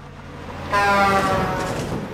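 Sound effect of a truck passing close with its horn blaring. A rushing noise builds, then about two-thirds of a second in the horn cuts in loud and its pitch sinks as it goes by, fading toward the end.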